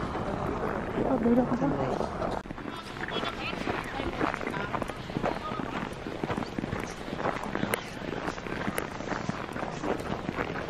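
Footsteps crunching on snow as someone walks, with people's voices in the background; a voice stands out about a second in.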